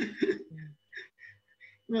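A man's short laugh trailing off into a few soft, breathy throat sounds.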